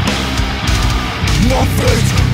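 Slamming beatdown metal: heavily distorted, down-tuned guitars, bass and drums playing a dense, heavy riff.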